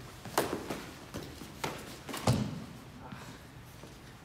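A quick series of taps and thuds from a foam-staff sparring bout, with foam staffs knocking together and feet stamping on a hardwood gym floor. About five or six sharp hits come in the first two and a half seconds, the heaviest and deepest thud a little over two seconds in.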